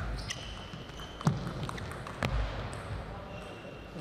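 Table tennis ball being played in a rally: a few sharp clicks of ball on racket and table, roughly a second apart, the loudest about a second in.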